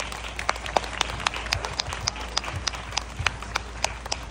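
Scattered audience applause: several people clapping unevenly, with the individual claps standing out.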